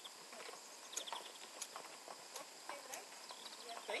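Faint, irregular hoof clops of Icelandic horses shifting their feet on a hard paved yard, a few scattered knocks a second or so apart.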